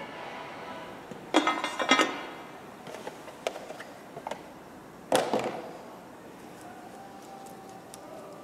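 Soft background music under two short, loud bursts of rustling and handling noise, about a second and a half in and about five seconds in, with a few light clicks between. The noise comes from the old fuel-filter element and the new filter's cardboard box being handled.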